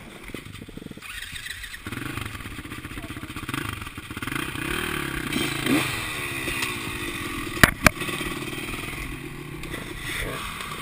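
Several dirt bike engines idling, with one briefly revving up about halfway through. Two sharp knocks, close together, stand out near the end.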